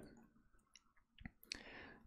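Near silence with a few faint clicks from a stylus tapping on a tablet screen while writing, and a short soft hiss near the end.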